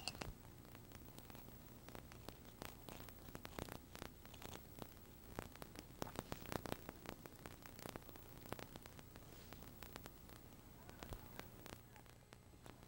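Faint clicks and rustles of PVC pipe and fittings being handled and pushed together, over a steady low mains hum and hiss.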